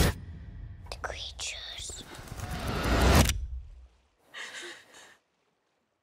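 Film-trailer sound design: eerie, unintelligible whispering voices over a low rumble that swells and cuts off suddenly a little after three seconds, then one short, faint whisper. The voices follow straight on from "Do you hear that?" and stand for the film's unseen entity heard but not seen.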